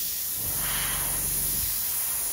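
Iwata Neo gravity-feed, dual-action airbrush spraying onto cardboard with its trigger held down and pulled back: a steady hiss of air and atomised fluid.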